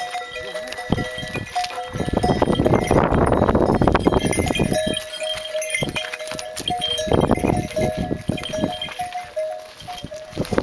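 Bells on a yak caravan clanking with short repeated rings as the loaded yaks walk past, with hooves knocking on the rocky trail. A loud rush of noise from about two seconds in lasts some three seconds.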